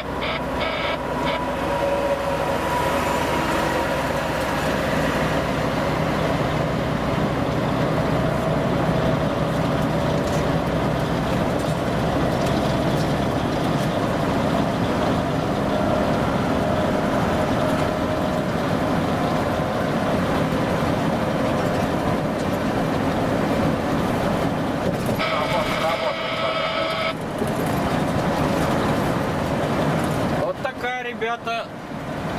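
Steady engine and road noise inside the cab of a MAN tractor unit driving at speed. Near the end, a pitched horn-like tone sounds for about two seconds.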